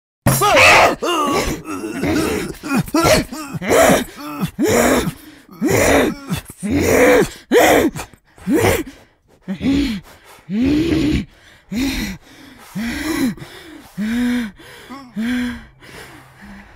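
A person groaning and gasping in distress: a rapid run of loud cries that starts suddenly out of silence, then grows fainter and lower in pitch toward the end.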